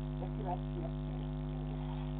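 Steady electrical mains hum, a stack of constant tones, picked up through a security camera's audio, with faint distant voices in the first second.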